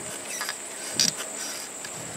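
Insects trilling steadily at a high pitch in summer vegetation, with a sharp click about a second in.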